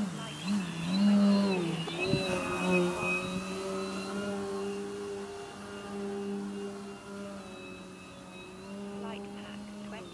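Propeller and motor of a radio-control aerobatic plane in flight: a droning tone that rises and falls with throttle and passes for the first few seconds, then holds steady and slowly fades as the plane moves away. A single sharp knock about two seconds in.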